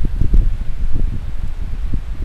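Gusty wind buffeting the microphone, a loud low rumble that swells and dips, with leaves rustling.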